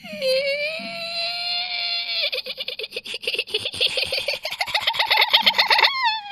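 A very high-pitched vocal squeal, held for about two seconds, breaks into a fast string of short high yelps that climb in pitch, like a shrill giggle.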